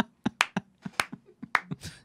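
One person clapping their hands, about eight sharp single claps in an uneven rhythm, roughly three or four a second.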